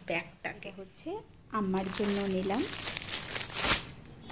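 Clear plastic packaging crinkling as a wrapped piece of fabric is handled. The crackle comes in about two seconds in and is loudest just before the end.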